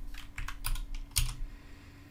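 Computer keyboard keys tapped in a quick run of about half a dozen keystrokes typing in a number, the last one the loudest.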